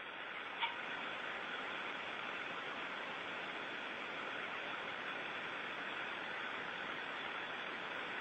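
Steady hiss of static on an open radio voice channel, with a single faint click about half a second in.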